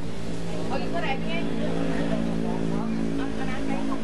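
A steady low drone of several held pitches, under a woman speaking Thai.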